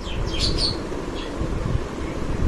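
A bird chirping a few short, high calls in the first second or so, over steady low background noise.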